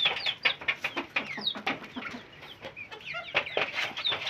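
A flock of hens and chicks calling: many short clucks and peeps overlapping, some falling in pitch.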